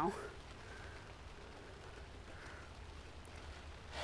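Quiet steady background hiss and low hum, with faint soft rustles of fingers pressing into moist potting soil about a second in and again past the middle.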